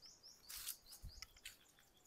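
A small bird chirping faintly: a quick run of short, high, repeated notes, about six a second, that fades out after about a second. Two brief bursts of noise come about half a second and a second in.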